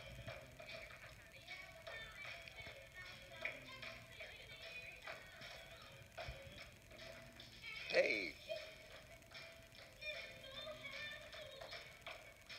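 Tap shoes clicking on a stage floor in quick rhythmic runs, over faint background music.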